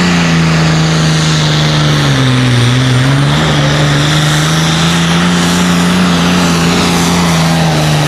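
Turbocharged diesel engine of an International pulling tractor running hard under load during a tractor pull. Its note drops about two seconds in as the engine lugs down, then climbs back and holds steady.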